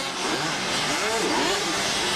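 Motocross bikes racing on the track. Their engine notes rise and fall in pitch as the riders open and close the throttle, over a steady wash of noise.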